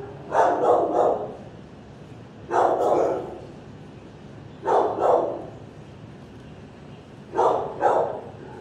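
Dog barking in short bursts of two or three barks, four bursts a couple of seconds apart.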